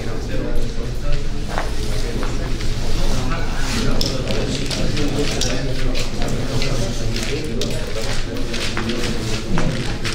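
Indistinct overlapping talk from a group of men in a large hall, with no single clear speaker.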